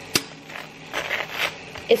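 Table knife spreading butter across toast: a sharp click just after the start, then several short scrapes of the blade over the crisp toast.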